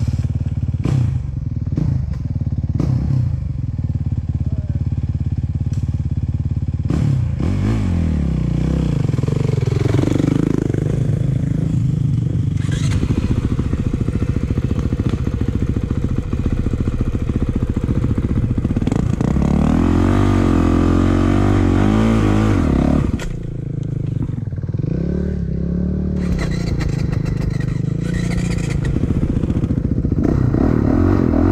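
Dirt bike engine running close by, revving up and down in several rises and falls of pitch, around ten seconds in and again from about twenty seconds on.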